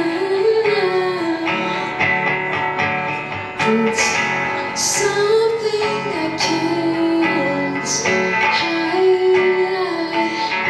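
A woman singing long held notes over a strummed acoustic guitar, performed live.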